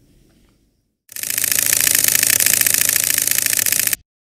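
A loud, fast mechanical rattling buzz, like a small machine or motor running, that starts about a second in and cuts off suddenly.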